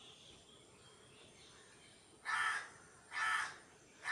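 A crow cawing twice, about a second apart, in the second half.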